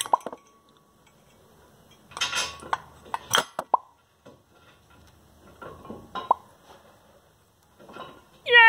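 Metallic clicks and clinks of a brake pad's backing plate being worked into the steel anti-rattle clips of a caliper mounting bracket, in short scattered bursts, a few with a brief ring.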